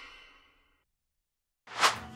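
Silence, broken near the end by one short, loud, breathy whoosh.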